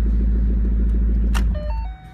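The 2014 Mustang GT's 5.0-litre V8, breathing through its Roush exhaust, idles with a steady low rumble. After a sharp click about one and a half seconds in, the rumble dies away and a few stepped electronic chime tones begin.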